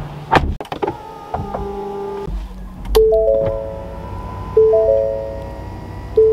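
2021 Ford F-150 Limited's in-cab warning chime: a three-note chime that repeats about every second and a half, after a couple of sharp clicks near the start. The engine idles low underneath.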